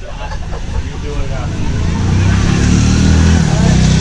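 Street traffic on a wet road: a motor vehicle engine running close by, growing louder about a second and a half in and then holding steady, over a hiss of tyres on the wet street.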